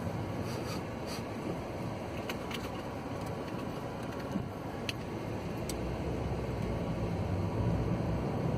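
Steady engine and tyre noise of a moving car heard from inside the cabin, with a few light clicks; the low rumble grows a little louder near the end.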